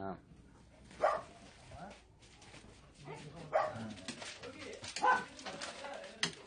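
Dogs barking: a few short, separate barks a second or two apart.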